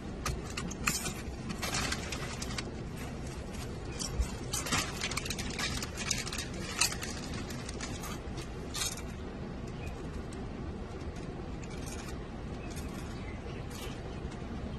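Steady low rumble of a car's cabin, with scattered small clicks and rattles, most of them in the first nine seconds or so, from things being handled inside the car.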